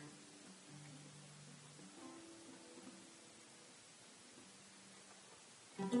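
Oud played very slowly: a few soft single plucked notes left to ring and fade, one at a time. Just before the end, louder plucked notes break in.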